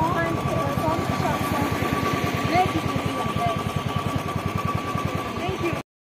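Single-cylinder Royal Enfield motorcycle engine idling with an even, quick thump, with people's voices over it. The sound drops out briefly just before the end.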